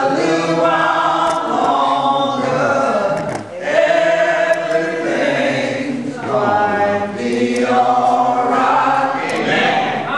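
A group of people singing together unaccompanied, in long sung phrases with brief breaks between them, as part of an opening circle ceremony.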